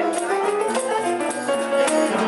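Upright piano playing a carol accompaniment, with a shaker rattling along in rhythm.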